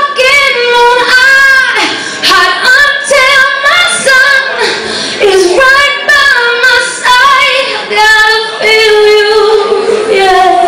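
A woman singing live into a handheld microphone, her voice much louder than the band, in phrases of long held notes with vibrato.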